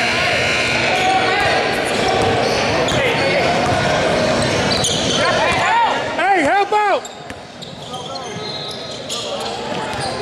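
Basketball being dribbled on a hardwood gym floor, with crowd chatter echoing in a large hall. A quick run of sneaker squeaks on the court comes about five to seven seconds in and is the loudest sound.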